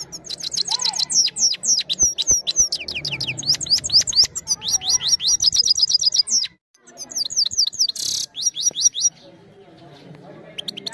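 Caged goldfinch singing a fast, continuous song of rapid high sweeping notes and trills, with a brief pause a little past six seconds and a short harsh buzzy note near eight seconds. The song stops about a second before the end.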